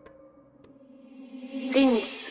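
Faint electronic music with a few steady held tones and sparse clicks, then a high hiss swells up and, near the end, a loud pitched voice-like sweep glides downward.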